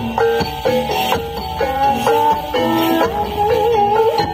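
Live traditional Javanese dance music from the ensemble onstage: a high, wavering melody line that slides between notes, over steady drum and percussion strokes.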